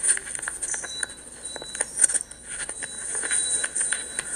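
Handling noise on a handheld phone's microphone as it is grabbed and jostled: irregular clicks, knocks and rubbing over a steady hiss.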